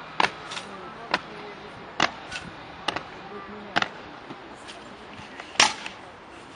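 Honour guard soldiers' boots stamping on stone paving as they goose-step in formation: sharp single stamps a little under a second apart, some doubled. The loudest stamp comes near the end, as the guard halts at the post.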